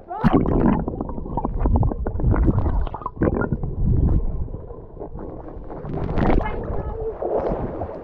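Water gurgling, sloshing and bubbling around a camera dipped in and out of the water surface, with a deep irregular rumble and short crackles of water against the housing.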